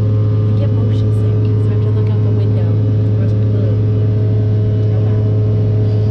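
Steady drone of an airliner cabin in flight: a loud, deep, unchanging hum with fainter steady tones above it, cutting off suddenly at the end.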